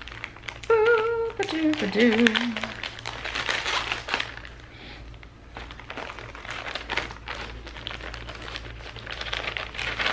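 Plastic poly mailer bag being snipped open with scissors and crinkled as it is handled and pulled apart. A woman's voice briefly hums a couple of pitched notes about a second in.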